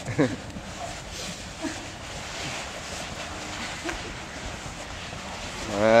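A short laugh, then steady room noise with faint scattered voices from a group.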